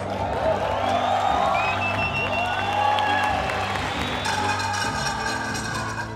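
An audience applauding and cheering over background music; the crowd noise gives way to the music about four seconds in.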